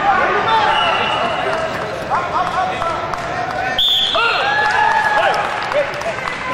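Overlapping shouting and chatter from many voices in a large gym, with a short high tone about four seconds in.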